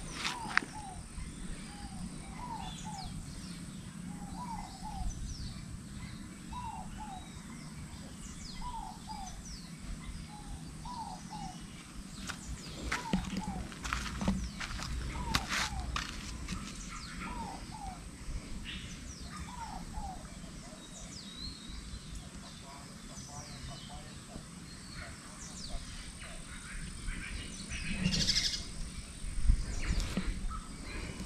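Birds calling: one bird repeats a short two-note call that falls in pitch every second or two, with scattered higher chirps from other birds, over a low steady rumble. A louder noise comes near the end.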